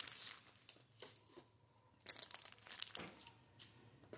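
Plastic wet-wipe packaging crinkling as it is handled, in a few short bursts with a quiet pause in the middle.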